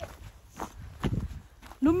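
Footsteps of a person walking: a few soft, irregular steps.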